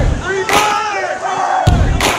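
Loud shouting voices over music with heavy bass thumps.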